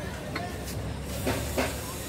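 Steady outdoor background noise, a low rumble with hiss, broken by two short knocks about a third of a second apart near the end.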